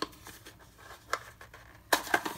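A few brief, faint clicks and taps of a knife box being picked up and handled, with quiet room tone between them.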